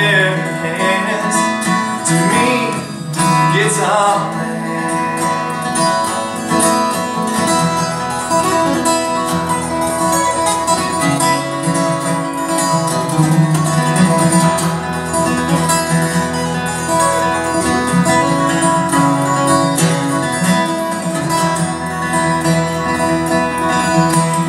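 Solo acoustic guitar playing an instrumental break in a folk song: steady picked and strummed chords.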